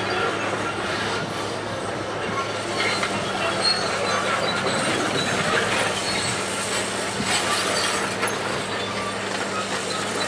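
Hitachi tracked excavator working: a steady low engine hum with many scattered, short metallic squeaks and clanks from its steel tracks and bucket.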